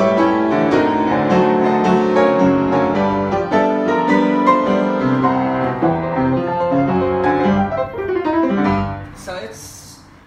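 Hallet, Davis & Co UP121S studio upright piano played with a busy run of many notes, ending on a low bass note about nine seconds in that then dies away.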